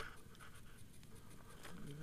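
Faint, steady hiss of passing air with light rustling, with no distinct events.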